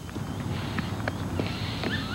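Open-air ambience on a ball field with a steady background hiss and a few faint, irregular taps.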